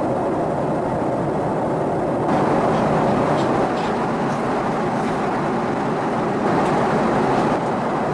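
Cabin noise of a Boeing 777-300ER airliner in flight: a steady rushing drone of airflow and engines, getting a little louder and brighter about two seconds in. A few faint light clicks sound over it.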